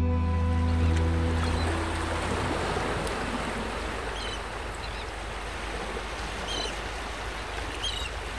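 Background music fading out over the first two seconds, giving way to sea waves washing on the shore. Short high bird calls come through four times over the surf.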